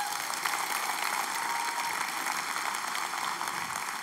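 Church audience applauding steadily, easing off toward the end.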